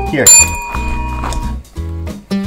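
A chrome desk call bell struck once a little way in: a single bright ding that rings on for under a second, over background music with a steady beat.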